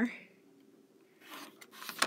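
Rotary cutter blade rolling through a fabric square against a quilting ruler on a self-healing cutting mat, cutting it corner to corner. A short rasping cut, about a second in and lasting most of a second.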